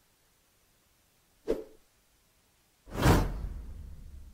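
Sound effect of a subscribe-button overlay: a short swoosh about a second and a half in, then a louder whoosh with a low rumble about three seconds in that fades away slowly.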